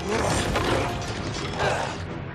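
Film fight sound effects: metal blades and armour grinding and scraping against each other in a close struggle, with two surges of grating metal, one at the start and one near the end.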